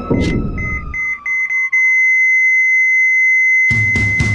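An electronic heart-monitor beep over droning music: the beeps come faster and merge into one steady flatline tone as the music drops away. Near the end, loud rock music with drums cuts in.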